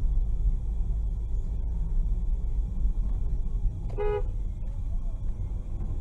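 One short car-horn toot about four seconds in, over the steady low rumble of road and engine noise inside a moving car.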